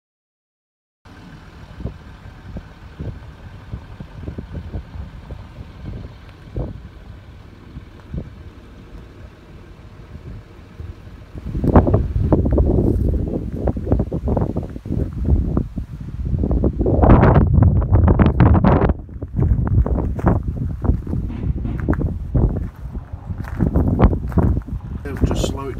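Wind buffeting the microphone: a faint low rumble at first, then from about halfway in a loud, uneven low rush that rises and falls in gusts.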